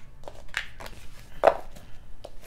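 Tarot cards being handled on a tabletop: a run of light clicks and taps as the deck is gathered up and knocked on the surface, with one sharper knock about one and a half seconds in.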